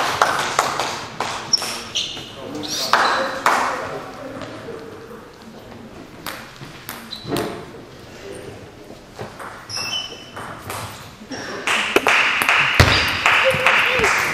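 Table tennis ball clicking off bats and the table in a large sports hall. There are scattered clicks between points, then a faster run of ball hits from about twelve seconds in as a rally gets going.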